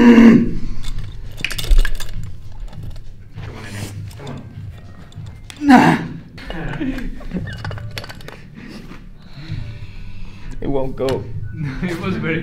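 Iron weight plates and a lifting block clinking, with a man's short strained vocal outbursts during a one-arm lift off a small edge, the loudest about six seconds in.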